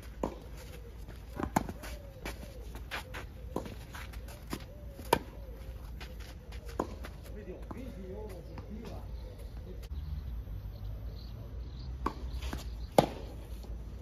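Tennis rally on a clay court: a string of sharp racket strikes and ball bounces at uneven intervals through the first seven seconds, then two more hits near the end, the loudest about five seconds in and near the end.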